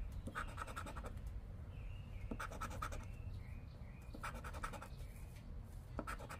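Edge of a casino chip scratching the coating off a paper scratch-off lottery ticket: three short bursts of quick rasping strokes, a couple of seconds apart.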